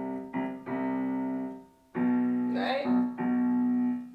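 Digital piano played slowly: sustained notes, each held about a second, with a short break about halfway through.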